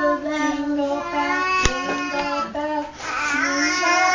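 An infant singing in long, held vowel notes, one steady tone after another. A sharp click comes about a second and a half in, and near the end a wavering, busier voice takes over.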